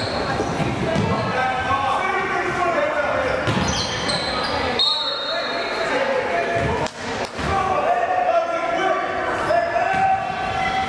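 Basketball game in a gym: a ball bouncing on the hardwood floor, sneakers squeaking, and voices from players and spectators, all echoing in the large hall.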